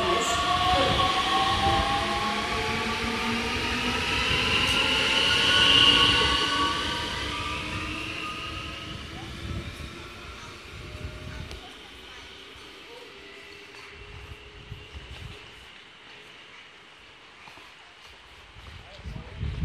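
Abellio Bombardier Talent 2 electric multiple unit accelerating away from the platform. Its traction motors whine in several gliding tones over the wheel noise, loudest about six seconds in, then the sound fades as the train draws off and is faint after about twelve seconds.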